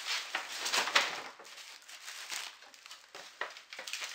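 A shopping bag crinkling and rustling as it is handled and rummaged through, in irregular bursts, loudest about a second in.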